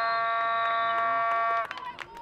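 A horn sounds one loud, steady blast that cuts off suddenly about one and a half seconds in. A thin, high, steady whistle tone runs over its first half.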